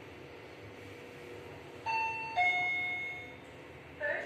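Fujitec elevator arrival chime: two electronic tones, a ding-dong, the second lower than the first and about half a second after it, sounding about two seconds in and ringing out, over a faint steady hum. It signals that the car has arrived at a floor.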